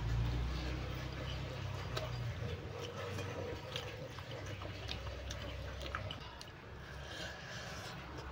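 Close-up chewing and small wet mouth clicks of someone eating fried chicken and rice by hand, over a steady low hum.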